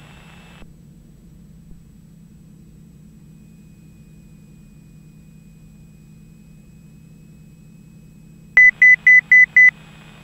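Low, steady drone of a Cessna Turbo 206 in flight on final approach. Near the end, five short high-pitched beeps, about five a second, come from the cockpit avionics.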